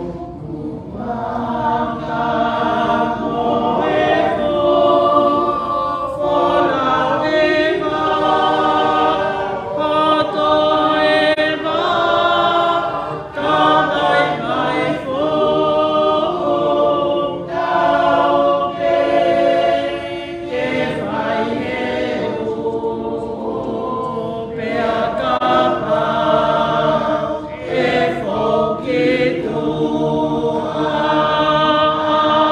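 A group of voices singing a hymn in several parts, in Tongan, in long held phrases with short breaks between them.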